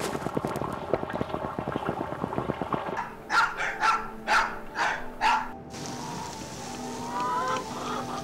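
A wok of soup boiling hard with a dense bubbling for about three seconds, then a chained dog barks five times in quick succession. Soft music comes in near the end.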